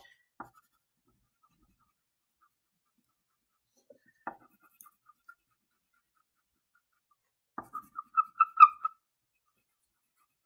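Wax crayon colouring on paper: a few faint scratches, then near the end a quick run of louder back-and-forth strokes with a thin squeak.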